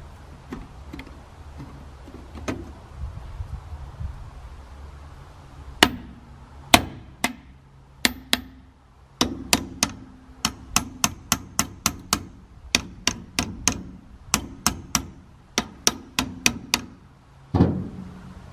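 Metal parts of an oil-bath air cleaner clicking and knocking as its steel rim is worked into place on the housing by hand. The sharp clicks become frequent about halfway through, some three a second with a short ring after each, and end in a duller thump.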